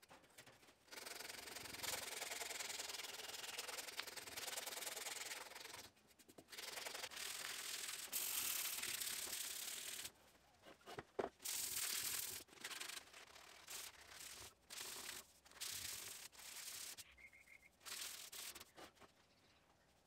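Hand sanding of an Ironbark stool leg, abrasive rubbing back and forth over the wood. There are long unbroken passes in the first half, then shorter strokes of about a second each.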